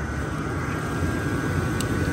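BMW 530i straight-six engine running with its water-pump-driven mechanical cooling fan turning through a thermal fluid fan clutch, a steady low whirring noise; the clutch is still slipping, not locked up. A single short click comes near the end.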